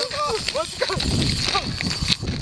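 A gull calling in a quick series of short yelping notes that rise and fall, fast through the first second and then a couple of single calls, over low wind noise.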